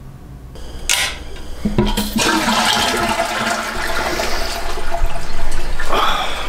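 Loud rushing water. A couple of short knocks about one and two seconds in, then a dense rush that builds toward the end.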